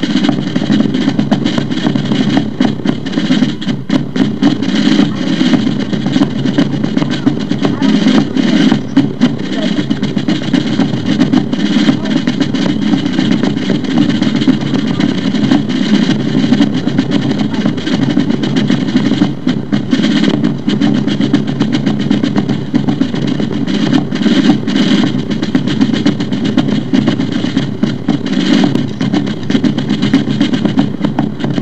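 Fife and drum corps music, with continual snare-style drumming under the fifes.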